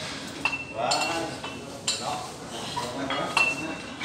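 Metal gym weights clinking and clanking several times, some strikes leaving a short high metallic ring.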